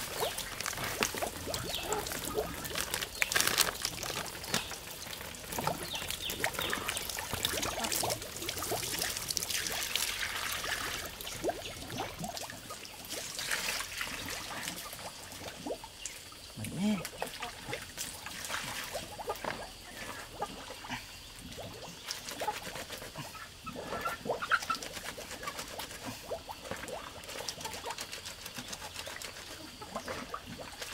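Clothes being hand-washed in a plastic basin of water, with irregular splashing and sloshing, while water runs from a pipe into an overflowing bucket. The splashing is busiest in the first half.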